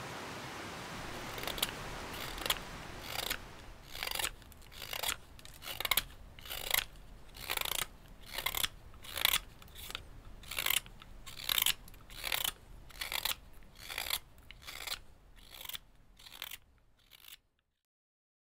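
Freshly sharpened hook knife slicing wood in short, evenly spaced strokes, a little more than one a second, fading out near the end.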